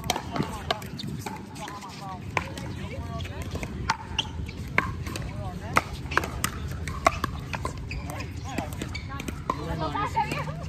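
Sharp pops of pickleball paddles striking a plastic ball, irregularly spaced, with faint voices underneath.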